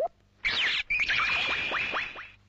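Electronic sound effects: a short falling zap about half a second in, then a steady high whine with hiss and a few quick falling sweeps, fading out at the end.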